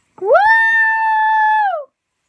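A single loud, high-pitched tone with overtones. It slides up, holds steady for about a second, then slides down and stops.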